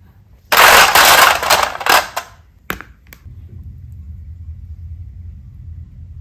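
Small clear plastic containers clattering against one another in a dense rattle of hard knocks lasting about two seconds, then two separate clicks. A low steady rumble follows.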